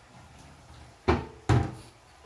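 Two sharp knocks about half a second apart as a wooden kitchen cabinet door is shut.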